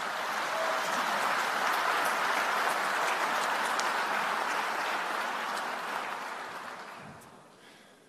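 A large audience applauding, steady for several seconds and then dying away near the end.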